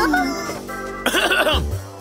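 Cartoon background music under character voices: a falling cry at the start, then a cluster of short vocal sounds in the second half, heard by the tagger as a cough or throat clearing.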